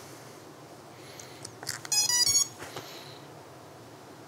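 A small click as the battery plug connects, then the quadcopter's motors play the ESC's power-up beeps: a quick run of short electronic tones stepping in pitch, about two seconds in.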